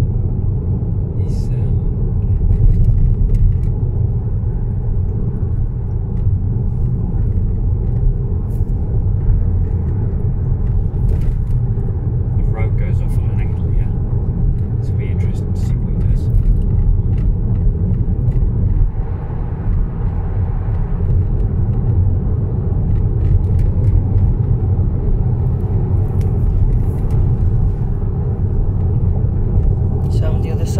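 Steady low rumble of a car's engine and tyres, heard from inside the cabin while driving along a road at speed, with a few faint clicks.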